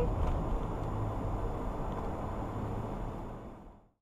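Steady road noise inside a moving car, fading out to silence near the end.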